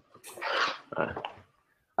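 A person's breathy exhale, like a sigh, followed by a short spoken "ouais".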